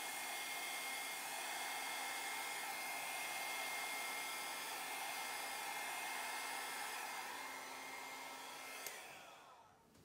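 Hand-held hair dryer running steadily, a rush of air with a constant high whine, blowing thinned acrylic pour paint across a wood round. About nine seconds in it is switched off with a click, and the whine falls away as the motor spins down.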